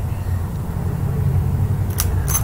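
A steady low rumble with no speech, and a brief click near the end.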